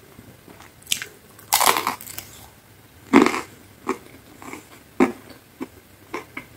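Close-miked biting and chewing of crisp pizza crust: a long crunch about a second and a half in, another about three seconds in, then softer chewing with short mouth clicks.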